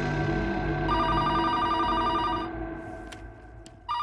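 A telephone ringing with a trilling tone: one ring of about a second and a half, then a second ring starting near the end. Film background music runs under the first ring and fades away.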